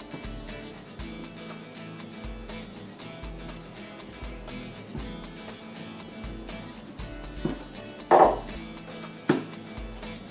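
Background music with a steady beat. Near the end, three short sharp knocks from the metal tamper and portafilter being handled, the second the loudest.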